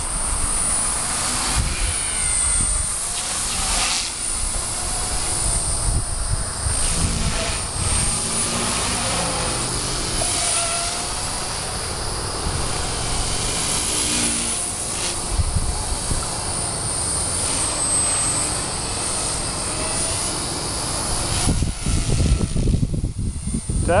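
Walkera 4F200 RC helicopter with an upgraded Turbo Ace 352 motor on an 18-tooth pinion, in flight. Its high motor and gear whine wavers up and down in pitch over a steady rushing rotor noise.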